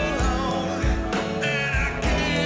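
A blues song played by a band with guitar, bass guitar and drums, with a steady beat and a pitched melody line over it.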